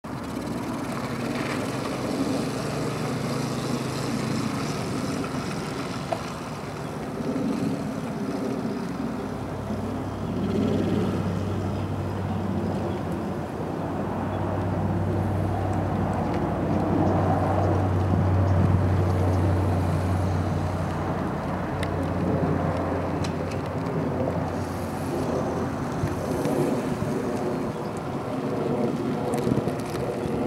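A small kids' vehicle motor running steadily at low speed, a low even hum that rises and falls a little as the ride goes on.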